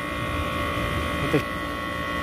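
Window-type air conditioner running: a steady hum with several fixed tones over a low rumble from its compressor and fan. The unit's thermostat is no longer working.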